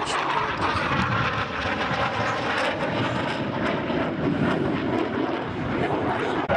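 Dassault Rafale fighter in flight, its two Snecma M88 turbofan engines making a loud, steady jet noise.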